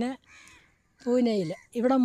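A woman's voice speaking in short phrases with pauses. A faint higher-pitched call comes in the pause about half a second in.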